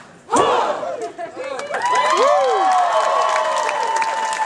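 Live audience whooping and cheering as a song ends: after a brief lull at the start, many voices yell and whoop at once, with long rising and falling whoops.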